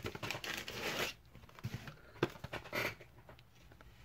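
Cardboard packaging being handled as a trading-card blaster box is pulled out of its shipping box: rustling and scraping in the first second, then a few light knocks and a short rustle, quieter toward the end.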